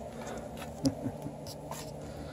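Faint rubbing and a few light clicks from a handheld camera being moved, over a steady low hum, with one slightly louder tick just under a second in.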